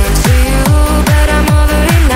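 Hands-up electronic dance music: a steady kick drum about twice a second, each hit dropping in pitch, under a stepping synth melody.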